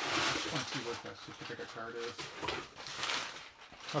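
A man's quiet, indistinct speech, low and broken, after a soft hiss in the first second.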